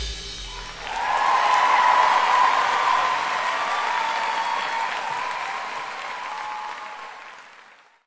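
Live audience applause that swells up about a second in, just as the orchestra's final note dies away, then fades out near the end.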